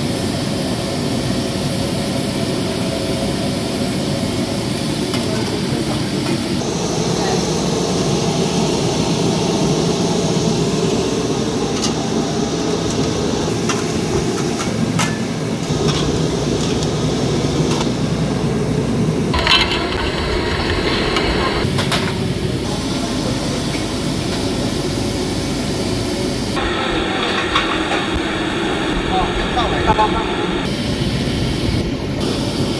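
Busy kitchen noise: the steady running noise of gas-fired fish steamers and the extractor hood, with a few sharp clinks of steel plates and background voices.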